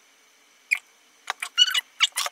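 A few small sharp clicks and a brief squeak in the second half, from handling a mascara tube as it is closed and put down.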